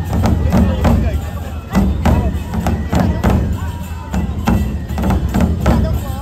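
Nebuta festival drumming: large taiko drums beaten in a steady, driving rhythm of about three strikes a second, with voices of the crowd over it.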